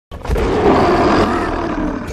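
Animated caveman character giving one long, loud roar that lasts nearly two seconds.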